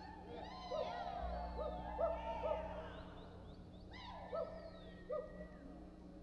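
Spectators whooping, hollering and whistling, many voices overlapping in rising-and-falling cries, in two surges, the second starting about four seconds in.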